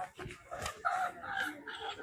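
A long animal call, about a second in and lasting about a second, over people talking.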